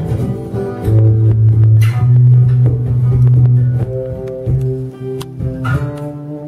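Acoustic guitar played without singing in the closing bars of a song: chords strummed and let ring over deep, sustained bass notes, with a last strum near the end that starts to fade.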